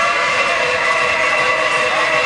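Loud hard electronic music from a vinyl DJ set, with the bass filtered out: sustained high synth tones over a noisy wash, with no kick drum.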